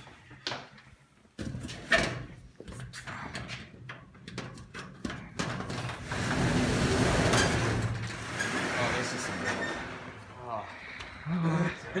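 Corrugated metal roller garage door being opened by hand: a sharp clunk about two seconds in, then a couple of seconds of loud rattling noise.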